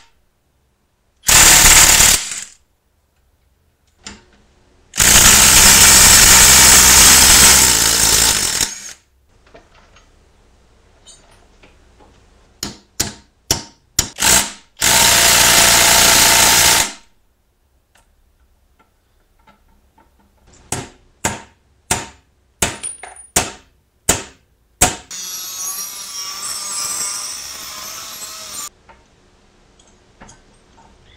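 Impact wrench hammering out the axle carrier's clamp bolts in three bursts, the longest about four seconds. Between and after the bursts come sharp metal clicks and knocks from hand tools and loose hardware, then a softer rattle of about four seconds near the end.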